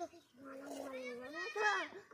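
A child's faint calling voice: one drawn-out call held for nearly a second that rises at its end, then a shorter call near the end.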